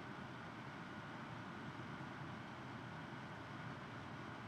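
Low, steady room tone of a lecture-hall recording: an even hiss with a faint high hum and no distinct sounds.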